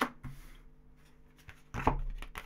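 A tarot deck being handled in the hands: a sharp tap at the start, quiet handling, then a louder burst of card clicks and rustling near the end as cards are drawn from the deck.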